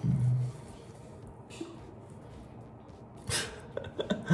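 Mostly quiet room tone in a small room, after a short hummed vocal sound at the very start. About three seconds in, a short breathy burst leads into laughter.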